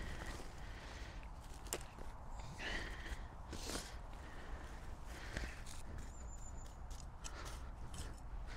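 Woven plastic weed membrane rustling and scraping as it is pulled and laid flat over soil by hand, a few short rustles at irregular moments.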